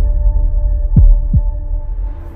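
Heartbeat sound effect in a tense music cue: a double thump, two low beats falling in pitch about a third of a second apart, about a second in, over a steady low drone.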